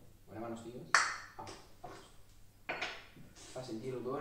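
A spoon clinking against a glass jar, sharply about a second in and again near three seconds, with bits of low talk between.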